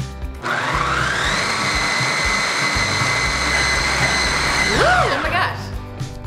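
Vitamix motor base driving the 12-cup food processor attachment to mix and knead spinach pizza dough. The motor spins up about half a second in with a rising whine, runs steadily, then winds down and stops near the end.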